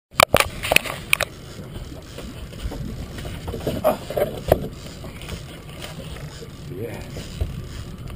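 Sharp knocks and clicks from the action camera being handled on its mount in the first second or so, then a steady low rumble.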